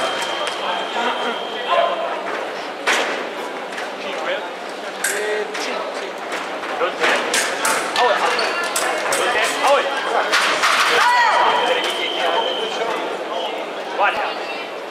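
Sabre bout in a large hall: a run of sharp clicks and knocks from the fencers' footwork and blade contact, with voices in the background. About eleven seconds in comes a drawn-out shout, followed by a steady high electronic tone from the scoring machine signalling a touch; a similar tone sounds near the start.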